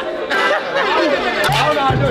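Several people talking over one another over background music, with the music's bass coming in strongly near the end.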